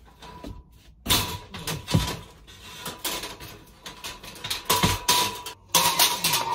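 Clanks and knocks of a metal shelving unit being taken apart as its steel frame and shelf beams are knocked loose and lifted out. The knocks come irregularly, starting about a second in, with the loudest at about two seconds and near the end.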